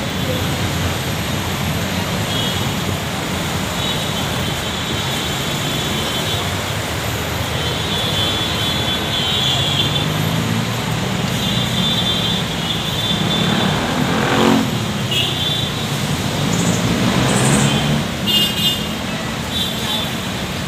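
Steady traffic noise from a busy city avenue, with vehicle engines running and passing; one passes close about two-thirds of the way through, its pitch falling. A thin high whine comes and goes over it.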